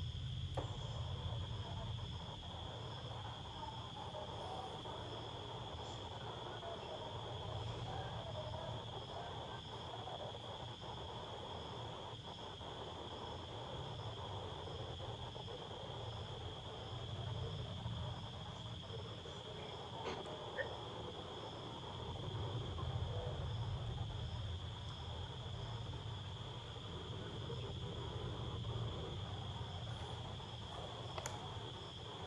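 Insects, likely crickets, chirring in a steady high-pitched tone over a low, wavering background hum.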